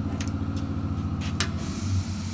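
Machinery running in the workshop: a steady low hum with a fast, even pulsing beat. A few light clicks sound over it, and the lowest part of the hum changes shortly before the end.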